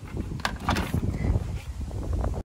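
Wind rumbling on the microphone outdoors, with a few short clicks and knocks of gear being handled about half a second in.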